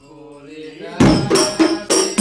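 A single chanting voice in a lull of the drumming, then about a second in the terbang frame drums come back in together with loud, rhythmic strikes, about three or four a second.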